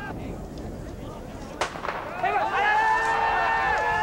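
A starting gun fires once, a single sharp crack that starts the race. About half a second later comes a sustained shout from the spectators' voices, lasting a couple of seconds.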